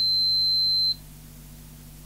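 Digital multimeter's continuity beeper giving one steady high-pitched beep while the probe rests on an HDMI connector ground pin, showing continuity to ground; it cuts off suddenly about a second in as the probe lifts off the pin.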